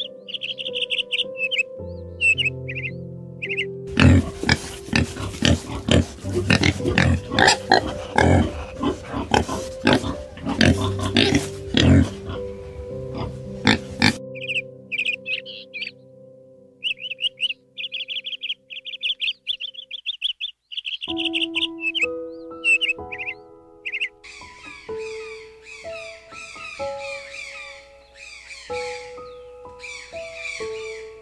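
Soft background music of sustained notes with animal calls laid over it: short high chirps at the start and again past the middle, a loud run of rapid rough grunting pulses from about 4 to 14 seconds in, and many birds calling together near the end.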